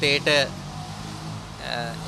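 A man speaking Sinhala into press microphones, breaking off for about a second in the middle; in the gap only a low, steady background hum is heard.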